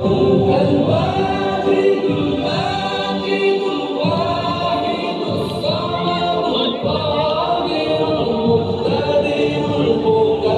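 Music with several voices singing together, steady and fairly loud throughout.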